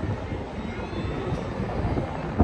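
Wind buffeting the microphone with a low, gusty rumble while riding the moving Golden Zephyr rocket ride.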